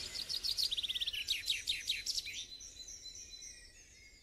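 Birds chirping: a quick run of high, rapid chirps, then a few louder downward-sweeping notes, dying away to faint high warbling.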